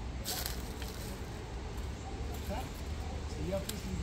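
A short rustling hiss of dry brush being handled as a brush pile is set alight, then a few faint clicks, over a low steady rumble.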